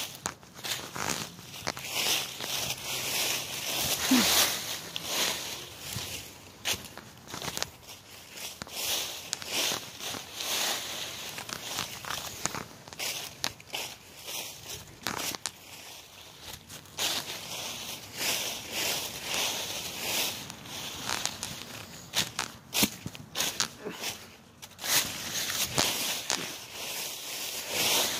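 Footsteps through dry fallen leaves, the leaves crunching and rustling in irregular bursts.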